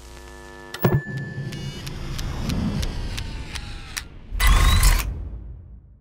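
Designed brand logo sting of mechanical sounds. It opens on a low hum, then a sharp click about a second in starts a run of evenly spaced ticks, about three a second. Near the end comes a loud hit with a rising whistle, which then fades out.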